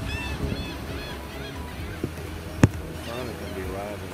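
Gulls calling, short arched cries repeated several times a second that fade through the first second, then a wavier call near the end, over a low steady rumble. A single sharp knock about two and a half seconds in.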